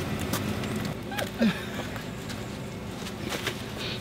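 Split firewood logs being handled while an outdoor wood boiler is loaded, with a few faint knocks of wood and footsteps. A short vocal sound comes a little over a second in.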